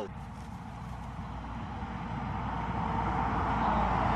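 A low rumbling noise that grows steadily louder over the few seconds.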